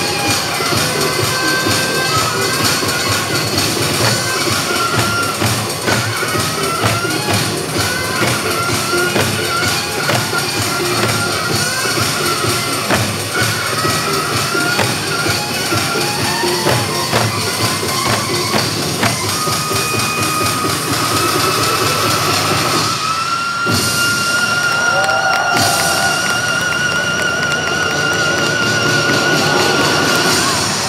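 Loud dance music with a busy, winding melody over a beat. About 23 s in it breaks off briefly, then one long high note is held with a slow wavering vibrato.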